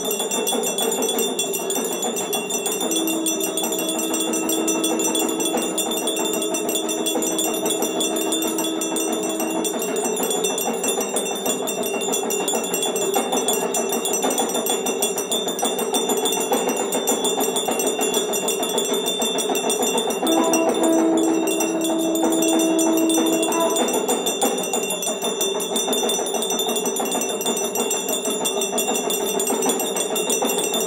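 Many bells ringing continuously together in a dense clangour, as in Hindu aarati worship. A steady held low tone sounds over them twice, first for about seven seconds and then for about three.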